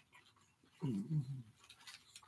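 A man's closed-mouth "mm" hum, low-pitched, in two or three short swells about a second in, made through a full mouth while chewing a burger.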